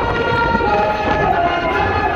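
Andean folk dance music led by wind instruments, playing long held, reedy notes that step from one pitch to the next over a low rumble.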